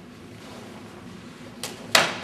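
Two sharp slaps from a martial artist's strikes in a kenpo form, near the end, the second one louder, with a short echo off the room walls.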